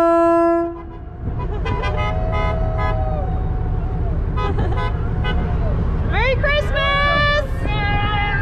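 A horn blast, one steady pitched note that cuts off just under a second in, followed by a low steady rumble under shouting voices, with loud rising calls near the end.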